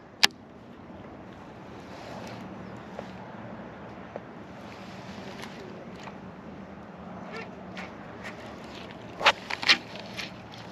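Baitcasting reel handled while fishing: a sharp click as it is engaged at the start, then quiet line retrieve, with a cluster of louder clicks and knocks near the end.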